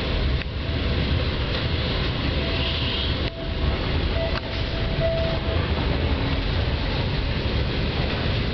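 Regional passenger train running along the track, heard from inside the carriage: a steady rumble and rattle of wheels and carriage. A faint thin whine sits under it for a few seconds in the middle.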